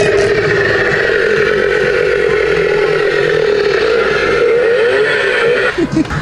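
Toy prop chainsaw's built-in sound effect: a steady, buzzing chainsaw-engine sound that cuts off suddenly just before the end.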